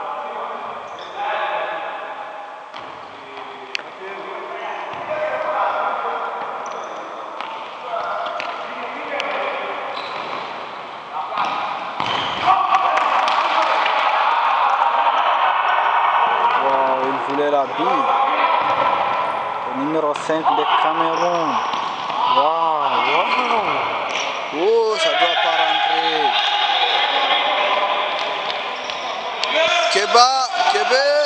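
Players and spectators shouting and calling out in an echoing sports hall, with a few sharp ball kicks or bounces on the hard floor. In the second half come repeated rising-and-falling 'oh' shouts.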